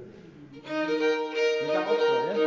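Fiddle and kozioł, the Wielkopolska goat-head bagpipe, starting a folk tune about half a second in, the fiddle line over a long held note.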